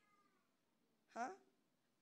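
Near silence, broken about a second in by a single short spoken "huh?" from a woman preacher, rising in pitch.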